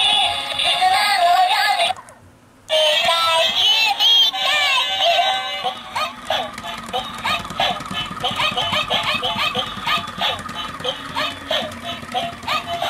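Pikachu walking-and-singing plush toy playing its built-in song through a small speaker: a high synthetic voice singing over music. The song breaks off briefly about two seconds in, then resumes, with a quick steady beat in the second half.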